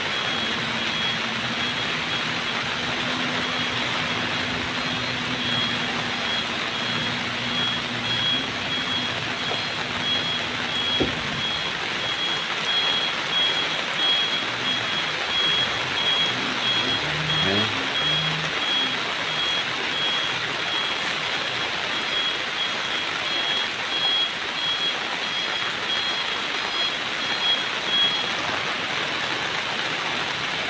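Reversing alarm of a Mitsubishi Fuso truck beeping in a long train of short, high beeps as the loaded truck backs down a slope where it has lost grip on the wet road. Under it, the truck's engine runs and steady rain hisses. The beeping stops near the end.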